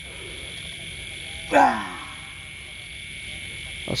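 Steady, shrill chorus of crickets and other night insects. About a second and a half in comes one loud, short cry that falls in pitch.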